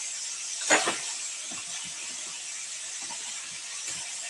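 Computer keyboard typing: a string of faint key clicks, with one louder click about three-quarters of a second in, over a steady microphone hiss.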